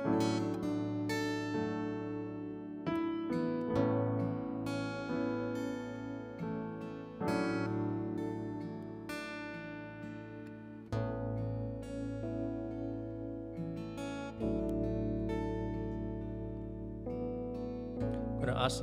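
Instrumental worship music: acoustic guitar strumming with stage-piano chords, notes ringing and fading between chord changes, with deep bass notes coming in past the middle.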